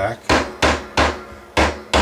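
A small plastic-faced fret hammer tapping a new pre-radiused fret down into its slot in a guitar fingerboard: five sharp taps, about three a second, with a short pause midway.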